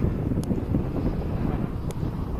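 Wind buffeting the microphone: a low, uneven rumble, with two brief clicks, about half a second in and near the end.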